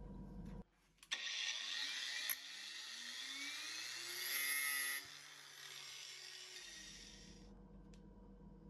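A small electric motor whirring, its pitch rising over a few seconds, with a scratchy hiss that drops in level about five seconds in and fades out near the end.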